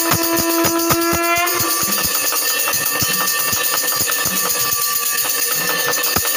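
Temple aarti music: fast, steady drum beats, about six a second, under continuous jangling metal bells and cymbals. A conch (shankh) sounds one held note through the first second and a half and ends with a bend in pitch.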